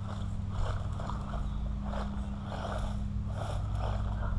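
Haiboxing Rampage electric RC truck driving across grass and dirt at a distance: faint, uneven motor and tyre noise that rises and falls, over a steady low hum.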